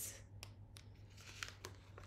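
Faint rustle of a picture book's paper page being turned by hand, with a few light clicks, mostly in the second half, over a low steady hum.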